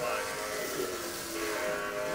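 HO-scale slot cars racing, their small electric motors whining steadily with several held tones as they run laps round the track.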